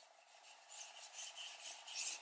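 Bristle paintbrush scratching across paper, laying on acrylic paint in quick short strokes, about five a second, starting under a second in.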